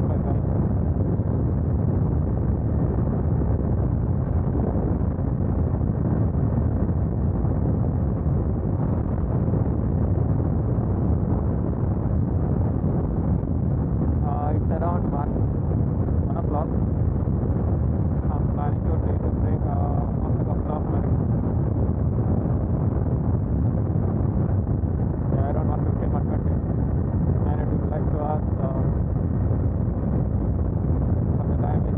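Motorcycle cruising at highway speed: a steady, loud rush of wind buffeting the microphone over the engine's drone, with no change in speed.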